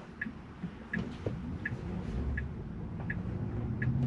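Tesla turn-signal indicator ticking evenly, six ticks about three-quarters of a second apart, over low cabin and road noise that rises slightly as the car pulls away and turns.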